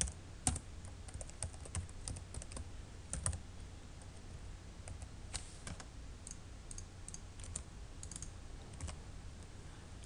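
Computer keyboard typing: scattered, irregular keystrokes, some in quick little runs.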